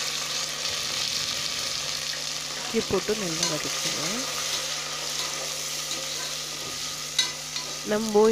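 Sliced onions and green chillies sizzling in hot oil in an aluminium pressure cooker while a metal spatula stirs them, a steady frying hiss with a sharp tap of the spatula near the end.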